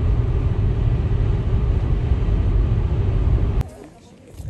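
Road noise inside a car driving on a motorway: a loud, steady, low rumble. It cuts off suddenly about three and a half seconds in, leaving faint outdoor ambience.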